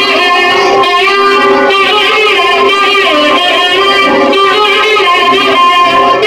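Loud recorded film music led by plucked strings, with held notes and melody lines that bend in pitch, played over a sound system for a stage dance.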